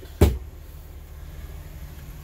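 A single sharp knock about a quarter second in, as the sliding metal table in a truck's sleeper cab is pushed shut against its stop without latching. A steady low hum runs underneath.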